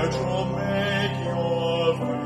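A hymn sung by a solo voice over piano accompaniment, with the voice holding a long note near the end.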